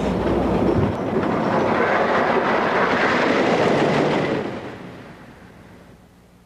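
Roller coaster train rumbling along its wooden track, loud for about four seconds, then fading away.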